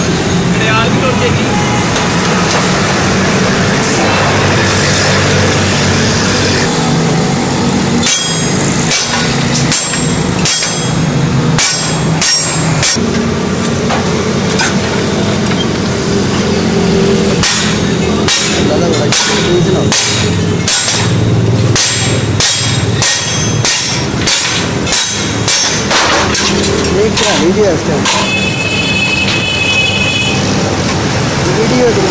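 Workshop noise over a steady background hum, with irregular sharp knocks and clinks of stainless-steel sheet being worked and handled, roughly one a second from about eight seconds in.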